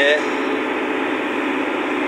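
The engine of a heavy machine running steadily, heard from inside its glass cab as a constant drone.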